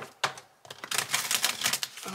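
A deck of gold-edged tarot cards being handled and shuffled: two sharp taps near the start, then a quick, dense run of card clicks for the rest of the moment.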